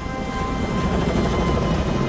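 Tandem-rotor heavy-lift helicopters flying past, their rotors chopping in a dense low rumble that grows louder about a second in.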